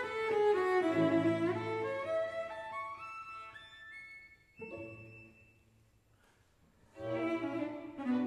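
Cello playing a phrase that climbs step by step into a high register and fades away, leaving a brief near-silent pause before lower notes start again near the end.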